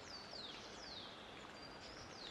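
Faint forest ambience of bird calls: a few high, thin whistles that fall in pitch, then a short level whistle near the end, over a soft steady hiss.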